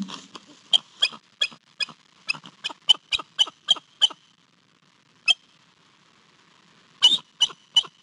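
Bald eagle calling: a quick run of about eleven sharp, high chirps, then a single chirp, then three more near the end.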